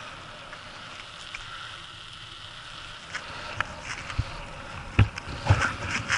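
Steady rolling and wind noise of a ride over a rough, patched asphalt street. From about halfway it gives way to scattered knocks and then several loud thumps near the end.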